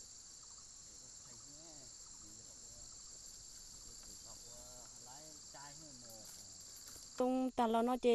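Steady high-pitched chorus of insects in a hillside forest, with faint distant voices. About seven seconds in, the chorus drops away and a woman starts speaking close up.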